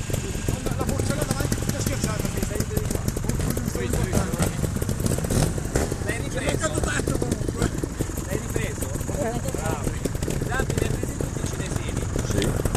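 Trials motorcycle engines running steadily at low revs close by, with a continuous low rumble, and faint voices in the background.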